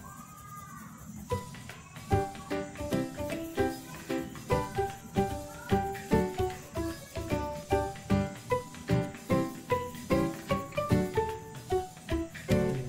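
Background instrumental music with a steady quick beat and short bright notes. It dips briefly at the start, where only a faint rising-and-falling tone is heard, and picks up again about a second in.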